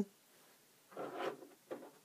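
Quiet handling noise: a soft rustle about a second in and a brief scrape near the end, as hands pick up a small plastic RC car part and set down a hex driver on a table.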